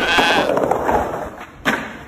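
Skateboard rolling, with a short high-pitched cry or squeal at the start and one sharp clack of the board about 1.7 seconds in.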